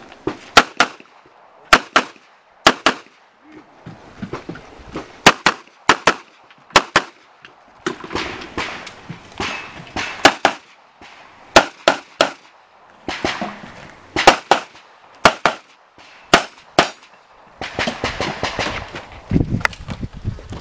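CZ SP-01 Shadow 9mm pistol firing rapid shots, mostly in quick pairs a fraction of a second apart (two shots per target), in groups separated by short pauses.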